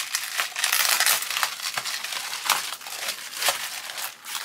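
Plastic bubble wrap being unwrapped and handled: steady irregular crinkling and crackling as the package is opened to take out photo-etch sheets.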